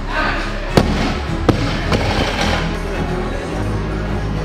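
Background music, over which a barbell loaded with Eleiko bumper plates to 165 kg hits the platform with a sharp bang about a second in, then a second, smaller bang as it bounces.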